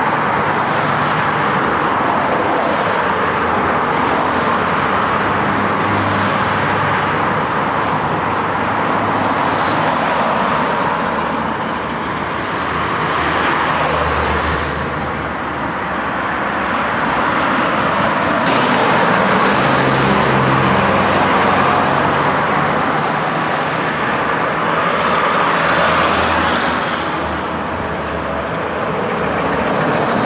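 Dense city road traffic: a loud, steady din of tyres and engines, with low engine hum swelling a few times as vehicles pass.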